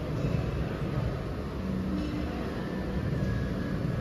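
Steady low background rumble of a large indoor space, an even noise with a few faint brief tones in it.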